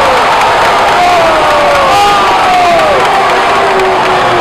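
Several voices shouting and cheering in celebration of a goal, with long drawn-out yells that fall in pitch.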